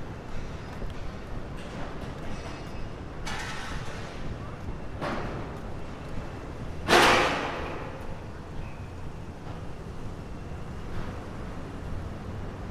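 Busy city street traffic noise, broken by a few short sudden noises; the loudest comes abruptly about seven seconds in and dies away over about a second.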